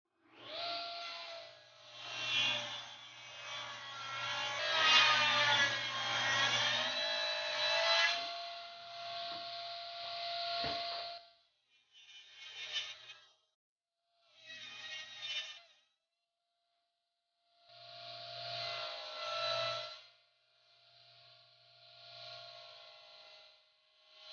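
Benchtop drill press running and drilling a hole: a steady motor whine over a low hum, with the bit's cutting noise loudest and wavering about five to eight seconds in. It comes in several separate runs broken by short silences.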